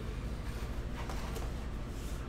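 Hands drawing a foam-wrapped plastic card case out of a cardboard box: a couple of light clicks and rustles about a second in, over a steady low hum.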